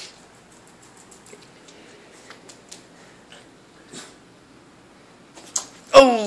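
Faint, scattered clicks and taps from a small dog moving about on a hardwood floor, with a louder knock near the end.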